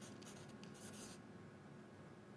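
Faint scratching of a pen drawing on paper or card: several short strokes in about the first second.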